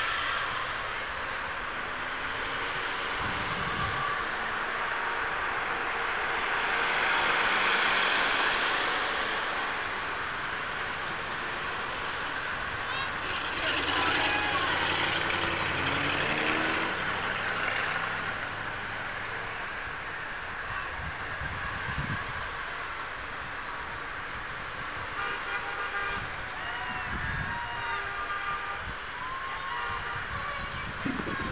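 Road traffic passing a crowd: car engines, voices and horn toots. A city bus drives past about halfway through, louder for a few seconds with a low engine hum.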